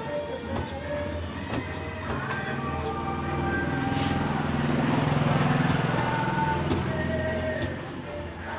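Background music, with a passing vehicle under it: a low rumble that swells up from about three seconds in, peaks in the middle and fades away near the end.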